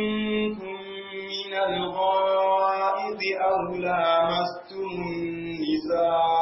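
A man chanting Quranic verses in melodic recitation (tilawa), drawing out long held notes in several phrases with short breaths between them.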